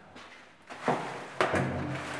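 Metal rubbish chute hatch being taken hold of: two sharp clunks about a second in, the second followed by a low metallic ringing hum.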